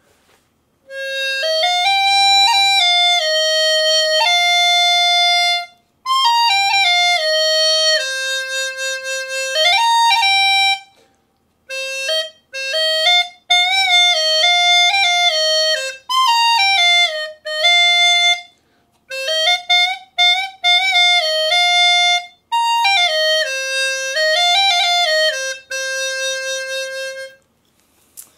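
Pocket-sized Japanese knotweed membrane flute, a saxophone-style flute whose note comes from a vibrating membrane, playing a slow pentatonic melody. Its tone is reedy and clarinet-like, and it is played in phrases of held and stepping notes with short pauses between them.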